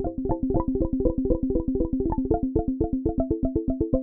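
Korg opsix synthesizer playing a fast patter of short pitched pings, more than ten a second at several pitches: its resonant filter operators are being pinged by LFO-rate square waves, and because the filters track the keyboard each held note rings at its own pitch, forming faux arpeggios.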